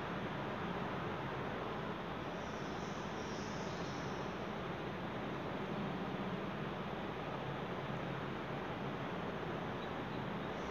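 Steady background noise: an even hiss with a low hum underneath, unchanging throughout.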